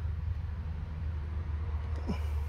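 A steady low rumble with no distinct events.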